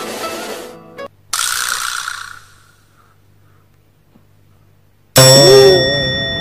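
Plucked-string background music that stops abruptly about a second in, followed by a short swishing sound effect that fades. About five seconds in comes a sudden, loud comic sound effect with a wobbling pitch and a ringing chime that dies away slowly.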